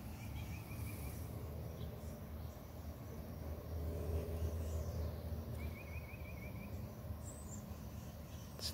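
Outdoor ambience: a steady low rumble, with a short, high chirping trill heard twice, about five seconds apart.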